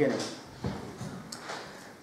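Handling noise from papers and furniture: a soft knock about two-thirds of a second in, then a short, light rustle a little after a second.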